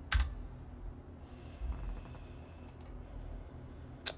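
Clicking at a computer while a chart is being scrolled: one sharp click just after the start, two faint quick clicks near the three-quarter mark, and another sharp click at the end, over a low room hum.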